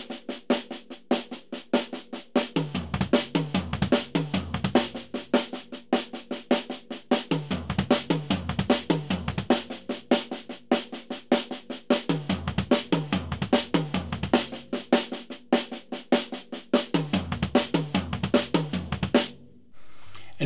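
Drum kit played as a steady triplet exercise: a measure of even snare-drum triplets, then a four-note figure of snare, small tom, floor tom and bass drum played three times, with each bass drum note doubled right-left on a double pedal. The two-measure pattern runs about four times, with the deeper tom and bass drum strokes returning about every four to five seconds, and stops about a second before the end.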